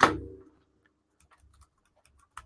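Computer mouse and keyboard clicks: one sharp click with a short ringing tail at the start, then a few faint ticks about a second and a half in.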